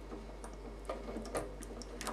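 A few faint, light clicks from plastic tubing being handled at a stainless steel sink.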